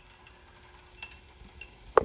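Freewheeling ratchet pawls in the chain drive of an electrified Planet Jr BP1 walk-behind tractor, clicking and tinkling lightly and irregularly as the drivetrain spins at no load, over a faint steady hum from the electric motor. A sharp knock comes right at the end.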